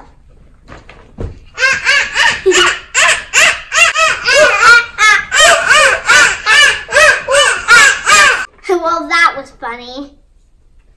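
Two children imitating monkeys: a fast run of short, loud calls, about two a second, each rising and falling in pitch. The calls stop about a second before the end, and some brief talk follows.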